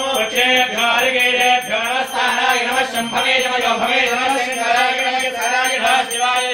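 A man chanting Hindu ritual mantras in Sanskrit, a continuous rhythmic singsong recitation with short breaks between phrases.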